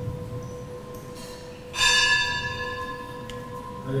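A bell struck once, nearly two seconds in, ringing out and fading, over a steady ringing tone that hangs on throughout.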